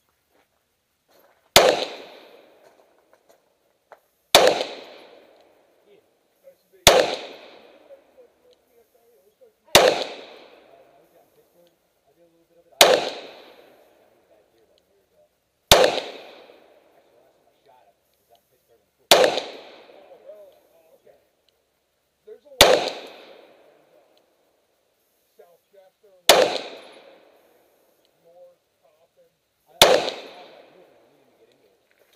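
Ten semi-automatic pistol shots fired one at a time, about three seconds apart: slow, aimed fire. Each shot dies away over about a second.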